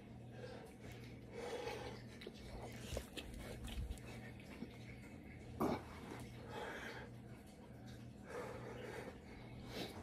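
A man breathing hard between push-ups, puffing out breaths every second or two, with one sharp thump about halfway through.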